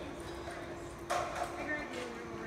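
A horse's hoofbeats with people's voices around, one voice calling out loudly about a second in.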